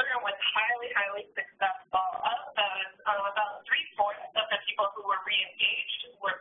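Speech: one person talking continuously over a narrow, phone-like web-conference audio line.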